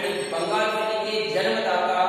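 A man's voice lecturing in Hindi with a drawn-out, sing-song delivery: long held syllables with only a few breaks.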